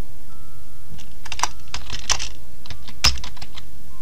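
Typing on a computer keyboard: irregular runs of keystroke clicks, thickest in the second half, over a steady low hum.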